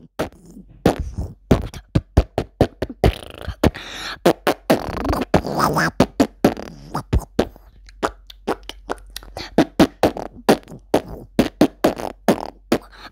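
Beatboxing: a quick run of percussive mouth pops and clicks, several a second, with a longer breathy stretch about four to six seconds in.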